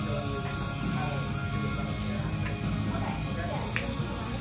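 Background music with a singing voice, and one sharp click near the end.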